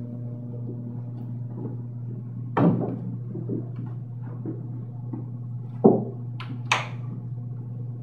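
Handling knocks and bumps as a hanging wolf-pelt robe is turned around: a few short knocks, the sharpest about six seconds in, over a steady low hum.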